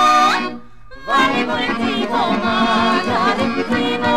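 Macedonian folk song recording: a long held sung note ends with an upward slide about half a second in. After a brief pause, the ensemble comes in with an instrumental passage, a busy ornamented melody over a steady low drone.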